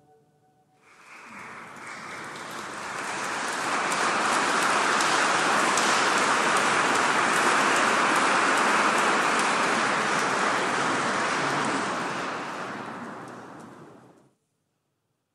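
Concert audience applauding, after the choir's last chord dies away. The clapping starts about a second in, builds to a steady level and fades out near the end.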